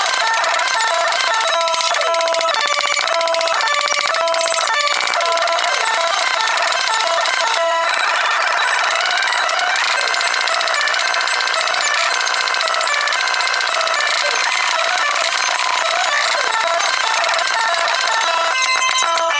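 Live rock band with drums, played back many times faster than real speed, so the whole mix sounds high-pitched and chattering, with almost no bass.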